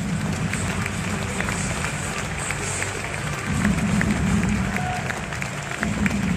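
Arena crowd applauding, with music playing over the arena sound system.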